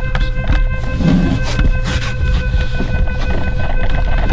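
Background music with steady held tones over a low pulse, with scattered scuffs and knocks of people crawling and scrambling across a carpeted floor.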